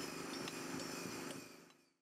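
Faint construction-site ambience: a steady low hum with a few faint clicks, fading out about one and a half seconds in.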